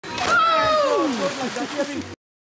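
A man's long yell that falls steadily in pitch over about a second, together with the splash of a body dropping backward into a swimming pool.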